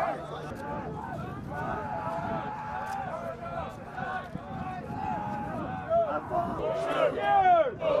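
A group of Marine Corps recruits shouting over one another, with a man's loud yelling near the end.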